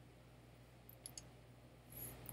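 Near silence with a few faint computer-mouse clicks about a second in.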